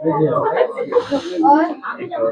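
Several people talking at once, with a short hiss about a second in.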